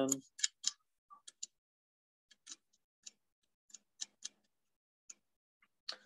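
Faint, irregular clicks of a computer mouse, about a dozen spread over six seconds, as pages of a document are scrolled through.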